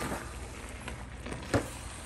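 Seafood and vegetables sizzling in a hot pan while being tossed with a wooden spatula, with a few light clicks and one sharp knock of the spatula against the pan about one and a half seconds in.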